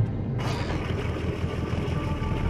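Water pouring off a boat and splashing onto the water's surface, starting about half a second in, over a steady low hum.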